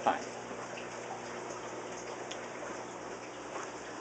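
Steady, low trickle of running water with no single event standing out.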